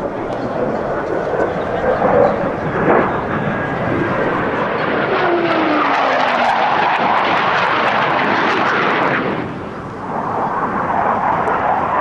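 Blue Angels F/A-18 Hornet jets, with twin turbofan engines, flying past: a loud jet roar that builds about four seconds in, with a falling pitch as a jet goes by. The roar drops off suddenly after about nine seconds, then rises again.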